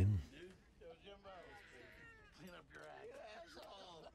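Faint people's voices from the film's soundtrack, with drawn-out cries that rise and fall in pitch.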